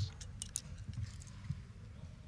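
A few light clicks in quick succession as steel-tip darts are pulled from a dartboard and knocked together in the hand, over a low background rumble.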